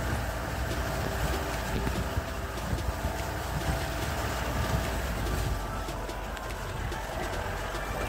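Off-road jeep driving slowly over a rutted, muddy dirt track: a steady low engine and drive rumble, with small knocks and rattles from the bumps.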